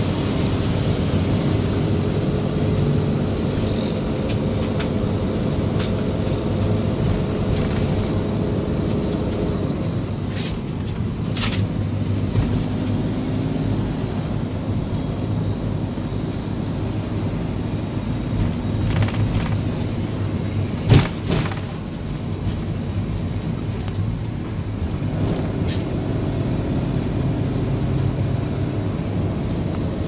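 Motorhome engine and road noise heard from inside the cab while driving. The engine note eases off in the middle and picks up again near the end, with a few light clicks and one sharp knock about two-thirds of the way through.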